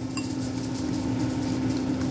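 A metal fork whisking mashed eggplant and egg in a ceramic bowl, with quick, irregular clinks of the fork against the bowl. A steady low hum runs underneath.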